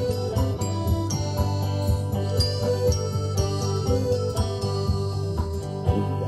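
Live folk band instrumental: banjo and acoustic guitar playing a steady picked rhythm under a tinkling high melody.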